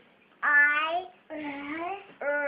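A young girl's voice sounding out a word one speech sound at a time: two drawn-out, held sounds with a short pause between them.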